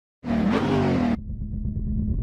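Intro sound effect of a car engine revving for about a second, its pitch sliding, then settling into a lower steady rumble.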